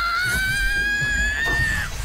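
A long, high-pitched animated-character scream held for nearly two seconds, creeping up in pitch and then breaking off near the end, over a low rumble.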